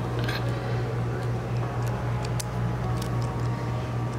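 Steady low hum of room background noise, with a few faint ticks and light rustles as the lace fabric and marker are handled on the floor.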